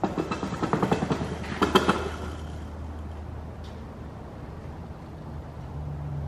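A rapid clattering rattle of many quick clicks for about two seconds, loudest near its end, then only a low steady hum.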